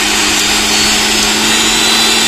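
Preethi mixer grinder's brushed motor running at speed with no jar fitted, a steady whine and hiss. It is the test run after a new 608 bearing and carbon brushes were fitted, and it is running smoothly.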